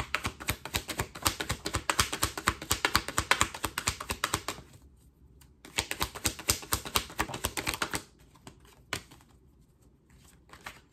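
A deck of tarot cards shuffled by hand: a rapid patter of cards clicking against each other in two runs, with a short pause about halfway and then a single tap near the end.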